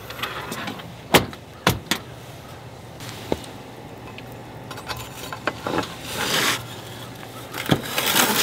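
Sharp metal clanks on a steel outdoor wood boiler, two loud ones about a second in, as its doors and ash door are handled, then a scraping rake dragging hot ash out of the ash door near the end.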